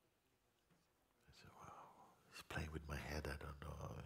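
A man's voice speaking faintly and low in the mix. It starts about a second in and grows somewhat louder halfway through.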